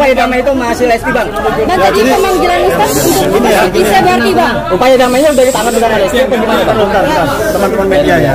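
Several people talking at once: loud, indistinct chatter with voices overlapping.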